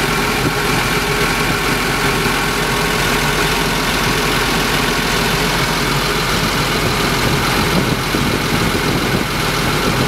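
Caterpillar D6N XL bulldozer's diesel engine idling steadily at low idle, about 850 rpm, heard from inside the cab.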